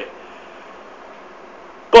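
A pause in a man's talk: only a faint, steady background hiss of room and microphone noise, then his voice comes back loudly on one word at the very end.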